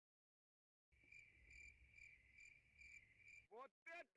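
Faint cricket chirping, a cartoon's ambience sound effect: a steady high trill pulsing about twice a second that starts about a second in. Near the end a cartoon character's voice begins, falling in pitch.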